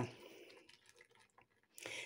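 Beer being poured from a can into a glass mixing bowl, faintly, the stream fading off about half a second in.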